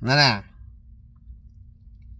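A man's voice says one short word, then pauses, leaving only a faint, low, steady hum in the background.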